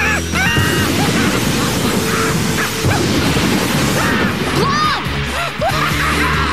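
Cartoon action music over a dense bed of crashing and clattering effects, with several short high-pitched yelps scattered through.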